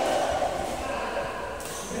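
Indistinct voices of people talking and calling out, echoing in a large indoor sports hall.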